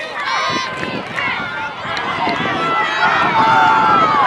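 Many voices shouting and yelling over one another: sideline players and spectators cheering a play in progress on the football field.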